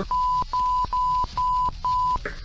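Censor bleep: a steady 1 kHz tone cut into five short beeps of about a third of a second each, laid over speech to hide a spoken name.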